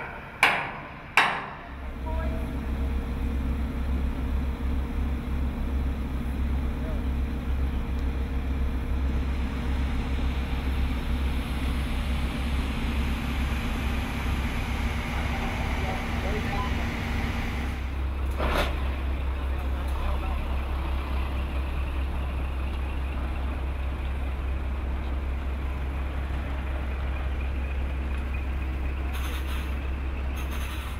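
Sledgehammer blows ringing on a steel truss connection pin, three strikes in the first second and a half. Then a heavy machine's engine starts and runs steadily with a deep drone, with a single sharp knock about 18 seconds in.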